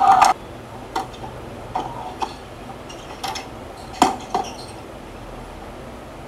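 Tennis ball being struck in a doubles rally: a handful of sharp, separate racket hits and bounces spaced about half a second to a second apart, the loudest about four seconds in, then the rally goes quiet. A shouted "oh" cuts off right at the start.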